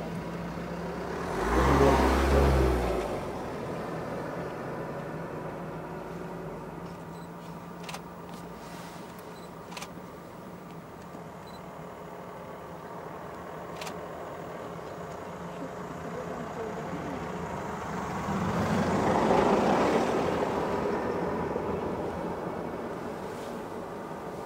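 A motor vehicle's engine running with a steady low hum. It rises in a loud low surge about two seconds in, and a second, broader swell of engine noise builds and fades around twenty seconds in.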